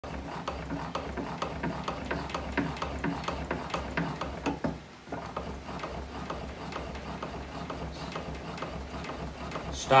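Bat-rolling machine working a Marucci CAT9 composite baseball bat between its rollers by hand during a heat-roll break-in: a steady run of short mechanical clicks, several a second, over a low hum, easing off briefly about halfway.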